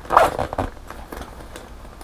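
Zipper on a fabric bag pulled open in one quick, loud zip shortly after the start, followed by quieter handling of the bag.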